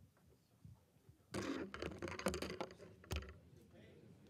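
Rustling and handling noises in a lecture hall, starting about a second in, with a sharp click about three seconds in.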